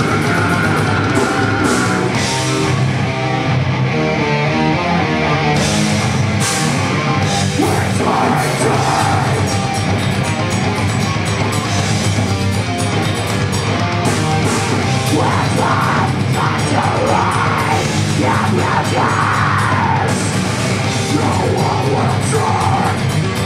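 Live deathcore band playing loud, heavily distorted guitars, bass and drums, with a vocalist screaming over it.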